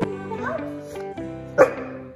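A black Labrador barks once, loudly, about one and a half seconds in, over background guitar music.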